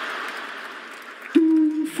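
Audience laughter fading out, then one flat, held beep about half a second long near the end, voiced into a microphone as an elevator's floor signal.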